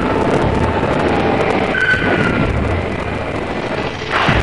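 Loud, steady rushing roar from a film soundtrack: the sound effect of flaming objects streaking through the sky. A brief thin tone cuts through about two seconds in.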